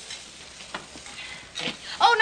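Food frying in a pan on a kitchen stove: a steady sizzle, with a brief louder sound near the end.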